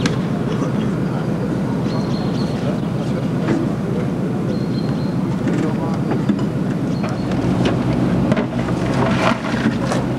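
Diesel engine of a tracked armoured vehicle running steadily at idle, a continuous low rumble.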